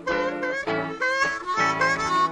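Blues harmonica cupped to a microphone, playing a short fill of several notes, some of them bent in pitch.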